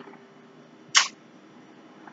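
One short, sharp click-like noise about a second in, over faint room tone.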